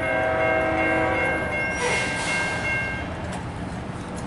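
A multi-note horn holds a steady chord. Its lower notes drop out about a second and a half in and the rest stop about three seconds in, with a brief rush of noise around two seconds in.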